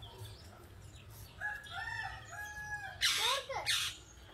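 A rooster crowing: one long call in stepped segments through the middle, followed by two loud, harsh calls near the end. Small birds chirp faintly underneath.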